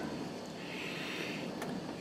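Low, steady background noise with a faint rustle of a plastic-carded drill bit package being handled in the hand, and one small click near the end.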